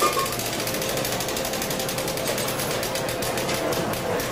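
Casino floor ambience: a rapid, even mechanical ticking of about ten clicks a second, which stops shortly before the end, over a steady electronic tone from the gaming machines.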